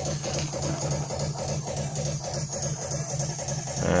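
Opened SATA hard disk drive powered up but failing to spin up. Its spindle motor gives a low buzz that pulses on and off in a quick, even rhythm while the platters and head arm stay still.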